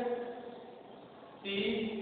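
Speech only: a man's drawn-out word trails off, then after a short pause he says another word near the end.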